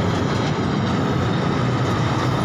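Amusement-park miniature ride train running on its track, a steady low rumble with no distinct knocks or whistles.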